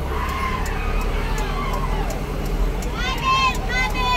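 A vehicle's engine and road noise give a steady low rumble from inside the car cabin. Over it, people's voices call out in long, wavering shouts, loudest about three seconds in.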